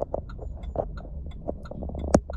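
Irregular small clicks and taps from a phone and its charging cable being handled and fitted into a mount in the car, over the car's low steady hum.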